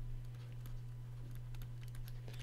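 Pen stylus tapping and scratching on a tablet surface while a word is handwritten: faint, irregular light clicks over a steady low electrical hum.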